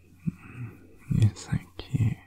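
Close-miked soft whispering and breathy mouth sounds in short uneven bursts, with a couple of sharp clicks near the end.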